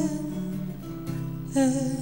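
Live ballad music: acoustic guitar and piano accompaniment, with a woman singing a short held note about one and a half seconds in.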